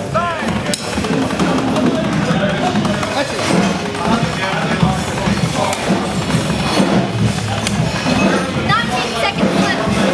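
Music with drums and a few voices, over a fast, continuous stream of drumstick strokes on a rubber practice pad during a speed contest.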